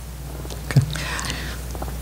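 A lull between speakers: a short spoken 'okay' and a soft breath or whisper close to a table microphone, over a steady low hum.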